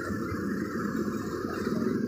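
Steady drone of a dense crowd of motorcycle and car engines idling and creeping forward in a traffic queue.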